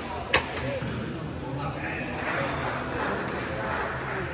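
A badminton racket strikes the shuttlecock once, a single sharp hit about a third of a second in, over steady background chatter of voices in a large hall.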